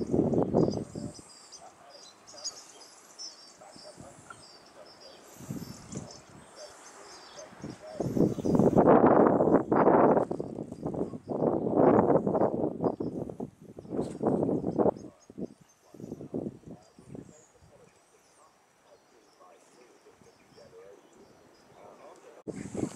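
Small songbird twittering in quick high notes through the first half. Partly under it, a louder stretch of indistinct, uneven noise runs from about eight to fifteen seconds in.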